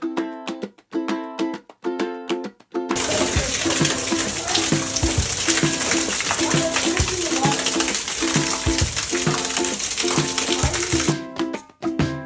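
Background music with evenly repeating plucked notes; from about three seconds in until near the end, a dense rush of splashing water over it: glacier meltwater pouring from an ice cave ceiling onto a person.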